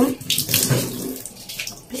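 Water running, a steady splashing rush.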